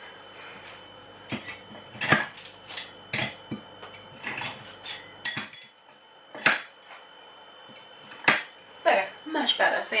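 Crockery and cutlery being handled, clinking and knocking against each other in irregular knocks about a second apart, some ringing briefly.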